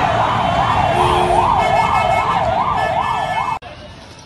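An emergency vehicle siren wailing rapidly up and down, about three sweeps a second, over the loud hubbub of a large crowd. The sound cuts off abruptly shortly before the end, leaving a fainter wavering siren.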